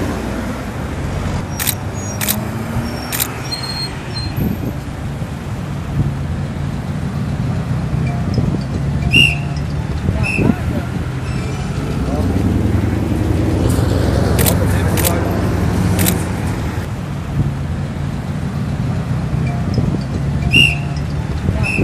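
Highway traffic passing steadily, with a louder swell a little past the middle as vehicles go by close. A few sharp clicks sound over it.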